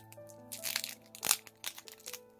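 Foil photocard packet crinkling and crackling as it is opened by hand, in a cluster of sharp bursts, the loudest a little over a second in, over soft piano music.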